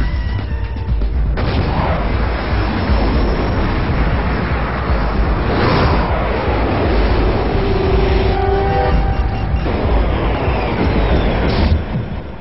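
Dramatic action-film music mixed with fighter-jet and missile sound effects: a continuous jet-engine noise with a deep low rumble, and a sweeping whoosh about six seconds in.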